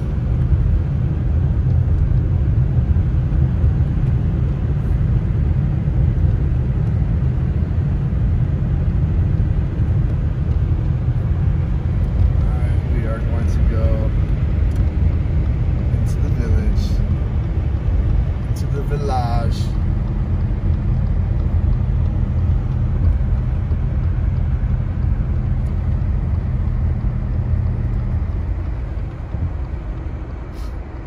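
Car cabin rumble of road and engine noise while driving on a snow-covered road. It eases in the last couple of seconds as the car slows to a stop.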